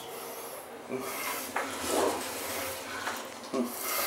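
Rubbing and scuffing handling noise from a handheld camera being swung around, with a few short knocks.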